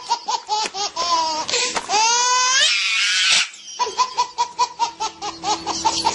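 A person laughing hard in rapid, high-pitched bursts. About two seconds in the laugh rises into a squeal and a breathy shriek, then breaks back into quick bursts of laughter.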